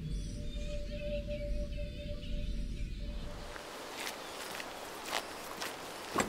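Eerie ambient soundscape: a low rumble under one steady held tone, with faint chirps high above, fading out about three and a half seconds in; after that, a few scattered clicks or knocks.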